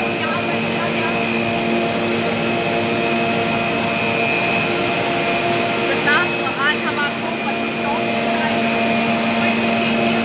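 Cable car (gondola) station machinery running with a steady whine of several held pitches over a mechanical rush, with a few short squeaks about six to seven seconds in.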